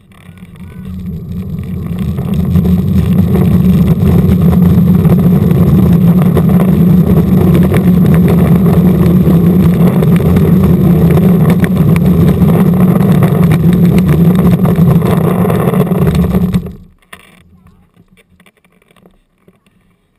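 Loud rumble of wheels rolling on asphalt, picked up by a camera riding on the moving ride itself. It builds over the first few seconds as speed picks up, holds steady, and stops abruptly about 17 seconds in.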